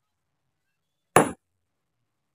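A single sledgehammer blow on rock about a second in: a sharp crack with a short high metallic ring.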